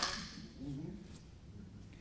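A single sharp hand clap right at the start, followed by faint voices in a quiet hall.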